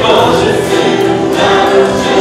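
Live worship song: a male voice singing over strummed acoustic guitar, electric guitar and bowed cello.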